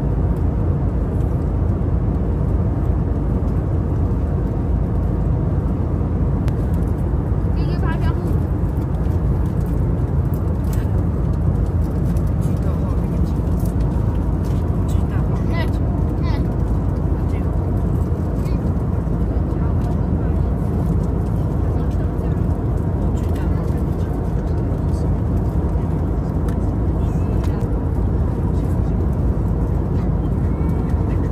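Steady airliner cabin noise in flight: a constant low rumble of engines and airflow, with scattered light clicks and clinks and faint voices over it.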